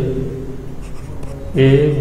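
A stylus scratching and tapping lightly as it writes letters on a pen tablet, a few short strokes about a second in.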